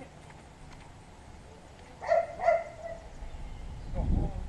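A dog barking twice, two short sharp barks about half a second apart, around two seconds in.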